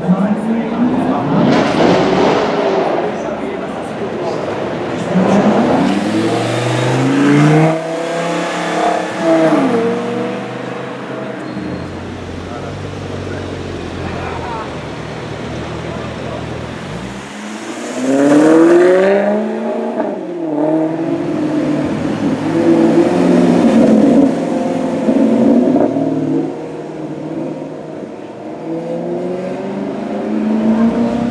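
Supercar engines revving and accelerating in the street, in several separate rising and falling sweeps, the loudest a little past the middle.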